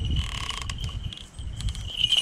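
A small falconry bell on a Harris hawk rings in a steady high tone as the hawk flies in to the glove, loudest as it arrives near the end, over low wind rumble on the microphone.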